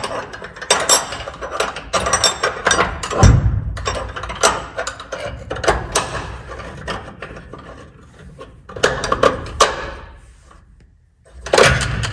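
Metal battery hold-down bracket clinking and rattling against the battery and its tray as it is worked into place by hand: irregular clicks and knocks, with a heavier thunk about three seconds in.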